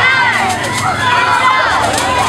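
Many young girls' voices shouting and cheering together at once, over street crowd noise.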